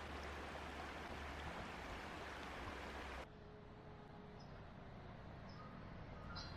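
Shallow river water running over stones, a steady rush. About three seconds in it cuts off suddenly to a much quieter outdoor background with a few faint bird chirps.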